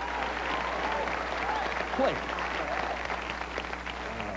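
Studio audience applauding, steady throughout.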